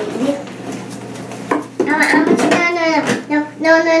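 Small objects clattering and rattling in a bathroom vanity drawer as toddlers pull it open and rummage through it, with scattered knocks and clinks.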